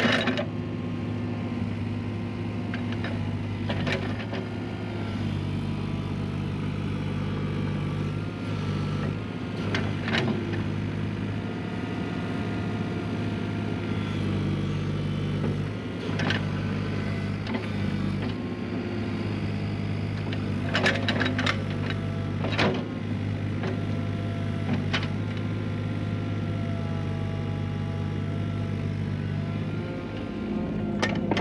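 Doosan DX27z mini excavator's diesel engine running steadily while the machine digs and pushes soil, its note shifting now and then as it takes load. Several sharp knocks are heard during the work.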